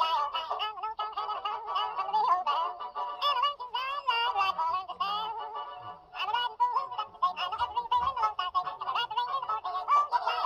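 A Rapido ALCO PA model locomotive's sound decoder playing a hidden Rio Grande advertisement Easter egg: a western-style clip of music and voices played back very fast. There is a brief break about six seconds in.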